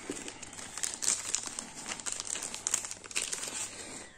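A thin clear plastic bag crinkling and rustling as large cards are slid out of it and the bag is handled: an irregular run of small crackles.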